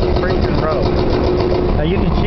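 An engine idling steadily, a low rumble with an even pulse.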